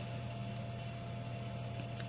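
A steady low hum under a faint even hiss, with no other sound: the background room tone.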